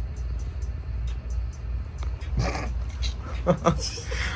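A person laughing in short bursts in the second half, over a steady low rumble.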